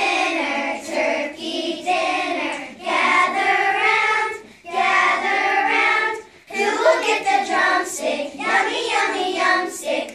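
A group of young children singing a song together, in sung phrases broken by short breaths about four and a half and six seconds in.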